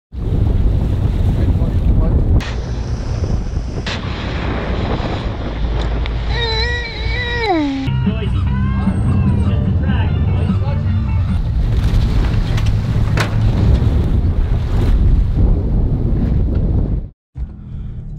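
Heavy wind rumble on the microphone over the noise of a boat at sea, with people's voices calling out. The sound changes abruptly several times, and a voice gives a long falling call about seven seconds in.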